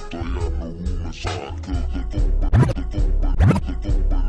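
Slowed-down, screwed G-funk hip hop beat with a deep bass line, cut by two turntable scratches, quick up-and-down pitch sweeps, in the second half.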